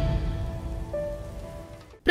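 Fading tail of a channel-logo intro sting: a decaying noisy wash with a few held musical notes that dies away to nothing by the end.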